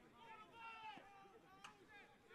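Near silence with faint distant voices of people calling out on and around a football field, and a single light tick about one and a half seconds in.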